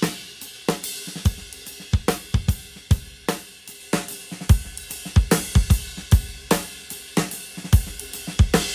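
Drum kit played in a steady groove (kick, snare, hi-hat and Zildjian K cymbals), summed to stereo and recorded to a two-track tape machine. Partway through, the same drum take plays back tape-flanged: two tape copies run almost in sync, giving a shifting, crazy spatial effect over the whole kit.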